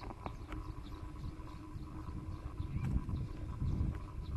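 Wind rumbling on the microphone of a camera on the move, swelling about three seconds in, with scattered light knocks and rattles from the ride over the path.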